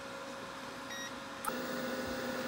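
COSORI air fryer's touch panel gives one short high beep as it is set, and about half a second later it clicks on and its fan starts with a steady hum, heard over a fainter hum already present. The display reads 205 degrees and 15 minutes.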